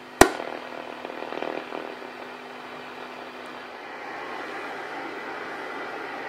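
A homebrew octal-valve superhet receiver plays shortwave band noise through its loudspeaker: a steady hiss with faint whistles in it, growing slightly louder about two-thirds of the way through. A single sharp click comes just after the start.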